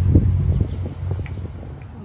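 A pickup truck driving past through an intersection, its engine rumble fading away within the first second. Faint traffic and wind noise on the microphone remain.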